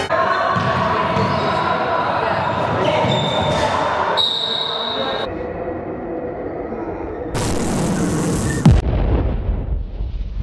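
Basketball being bounced on a sports-hall floor amid players' voices echoing in the hall. About seven seconds in, a burst of static-like hiss cuts off into a sharply falling tone and a low boom.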